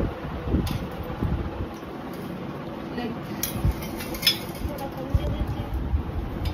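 A few sharp clinks of a steel ladle against steel pots, bowls and plates as curry is served, over a steady background hum.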